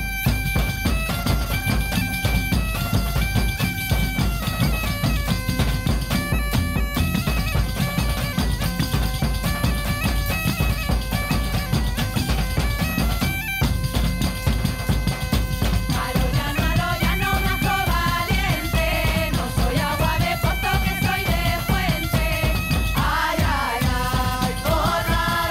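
Traditional Castilian folk band playing: a bagpipe carries a stepping melody over a steady beat of frame drums, jingling tambourines and a stick-struck drum. Voices come in singing in the second half.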